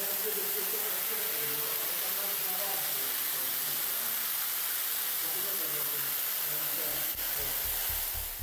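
Floodwater from a heavy downpour rushing across a floor and pouring down a stairwell, a steady loud hiss of running water. Faint voices are under it, and a low pulsing begins near the end.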